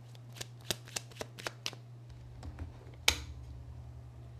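A deck of Kipper fortune-telling cards being shuffled by hand: a quick run of card snaps and taps in the first couple of seconds, then one louder knock about three seconds in.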